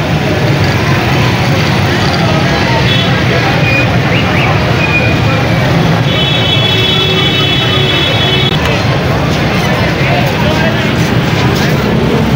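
Busy city street: traffic of cars and motor rickshaws running, with a crowd talking. A horn sounds steadily for about two and a half seconds around the middle.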